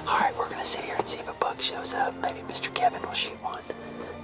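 A man whispering: hushed, breathy talk that is too low for the words to be made out.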